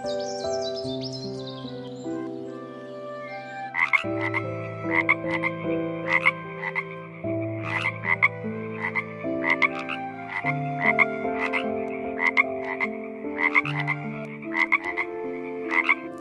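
A frog croaking in short, repeated calls, about two a second, beginning about four seconds in, over soft piano music. Before that, small birds chirp over the music.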